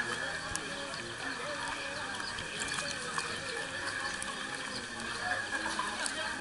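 Crowd chatter around a busy swimming pool: many overlapping voices at once, with occasional higher shouts and calls.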